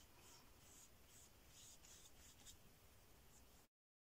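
Faint paintbrush strokes brushing acrylic paint over paper: a series of short, irregular scratchy swishes. Near the end the sound cuts off abruptly to dead silence.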